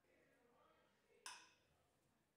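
Near silence in a quiet room, with one sharp click a little past a second in.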